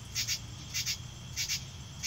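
Night insects chirping in a steady rhythm: a short, high-pitched pulsed chirp about every half second.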